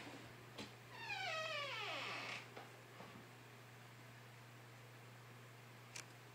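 A cat's single long meow, falling steadily in pitch, over a steady low hum.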